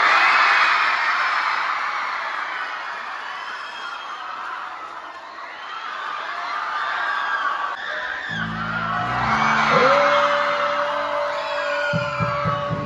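A crowd of schoolchildren cheering and whooping, loudest at the start and again about ten seconds in. Music with a heavy bass comes in about eight seconds in, with a long steady high note near the end.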